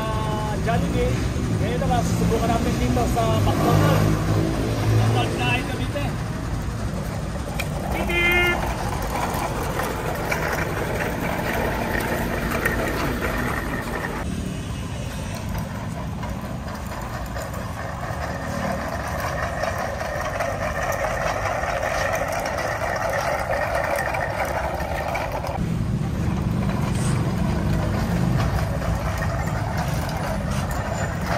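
Street traffic: vehicle engines running and passing, with voices in the first few seconds and a heavier low engine rumble, like a truck, in the last few seconds.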